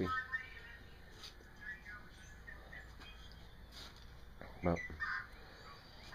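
Quiet room tone with a few faint, short bird chirps, near the start, about two seconds in and about five seconds in.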